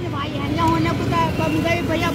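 Street traffic running as a steady low rumble, with people's voices talking over it.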